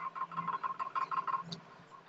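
A small animal chirping: a quick run of short, high chirps, several a second, that stops about a second and a half in.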